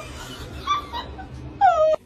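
Small dog whining: a few short, high whimpers, then a louder, longer whine near the end that slides down in pitch and holds.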